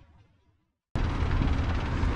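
Loud city street noise, a dense low rumble of traffic and outdoor air, cutting in abruptly about a second in after a moment of silence.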